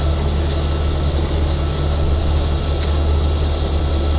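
Steady low engine and road drone heard inside the cabin of a moving bus, with a faint steady high-pitched whine above it.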